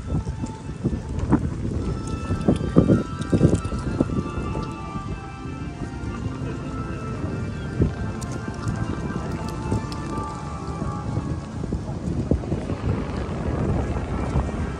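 Music with several steady held notes, over a low continuous rumble. A few loud thumps come about three seconds in.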